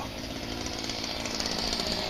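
A small engine running steadily in the background, slowly growing a little louder.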